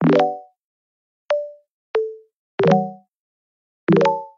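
Five short musical notes separated by silence, each struck sharply and fading within about half a second. Two are single tones; the other three are chords of several pitches sounding together.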